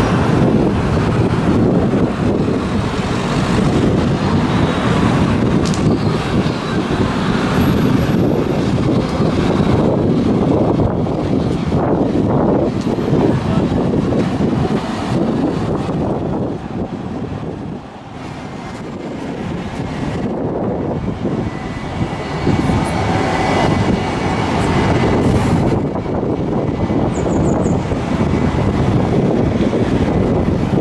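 Road traffic passing close by, a steady stream of cars and buses going past, with a short lull about eighteen seconds in.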